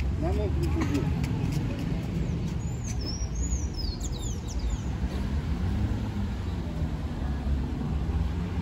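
Town-square street ambience: a steady low rumble of car traffic with passers-by talking in the background. A bird chirps a few times about three seconds in.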